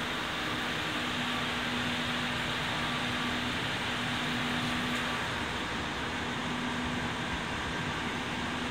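Steady mechanical drone of a diesel railcar idling at the platform, a constant low hum over an even hiss.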